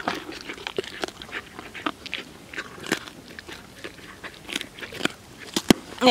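Miniature horse chewing a raw carrot: a run of irregular, crisp crunches close up.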